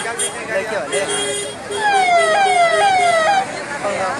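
An emergency vehicle's siren sounding over crowd talk: for about a second and a half near the middle it gives rising sweeps that each drop back abruptly, roughly two a second.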